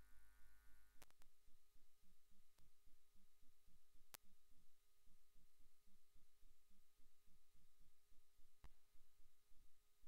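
Near silence, with faint low thumps at about three or four a second over a low steady hum, and an odd click.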